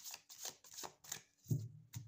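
A tarot deck being hand-shuffled: a light papery stroke about three times a second. About one and a half seconds in there is a louder dull thump.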